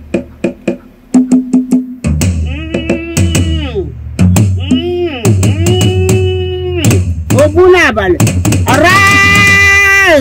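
A woman's voice chanting an incantation in long, sliding sung notes, the longest held near the end, over steady percussion with sharp knocking beats.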